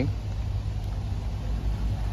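Street background: a low, steady rumble of road traffic.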